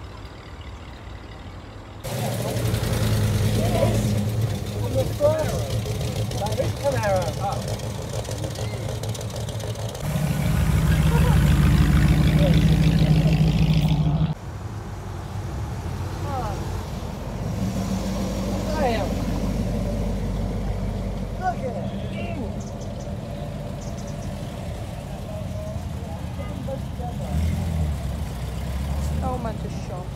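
Classic cars driving slowly past one after another, their engines running, with people talking in the background. The engine sound is loudest from about ten to fourteen seconds in, then stops suddenly.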